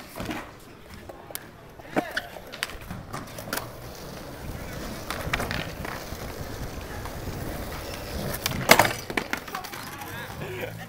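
Skateboard wheels rolling on smooth concrete, with several sharp clacks of boards hitting the ground; the loudest clack comes near the end.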